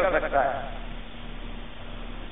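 A man's lecturing voice trailing off on a drawn-out syllable in the first half second, then a pause holding only steady recording hiss and a faint low hum.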